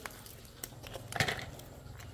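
A plastic ice cube tray being handled and flexed, with a few faint clicks and crackles as the frozen cubes are worked loose.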